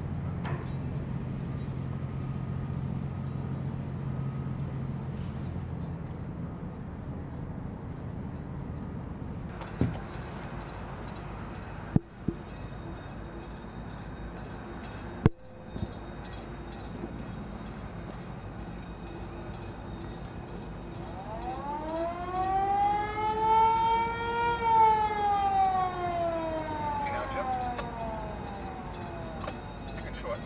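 A low steady drone for the first several seconds, a few sharp clicks in the middle, then a siren wails once near the end, rising and then falling in pitch over about eight seconds.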